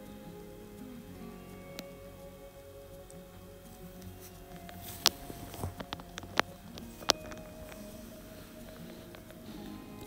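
Soft background music with slowly changing held notes, and a few sharp clicks and rustles of satin fabric being handled about halfway through.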